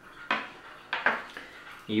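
A 1/6-scale figure's long accessory spear being set down on a table: two light clattering knocks about half a second apart.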